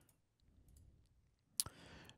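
Near silence with a few faint ticks, then a single sharp click about three-quarters of the way in.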